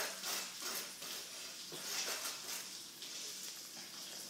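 Graphite pencil scratching on notebook paper in a series of short drawing strokes, several a second.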